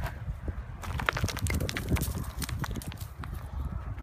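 Footsteps scuffing and crunching on loose rock and gravel during a downhill scramble, a quick irregular run of clicks and scrapes that thickens about a second in, over a low rumble.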